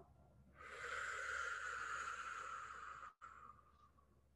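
A person blowing out a long, slow deep breath through the mouth: a steady rush of air that starts about half a second in, lasts about two and a half seconds and trails off near the end. It is the exhale of a calming deep-breathing exercise.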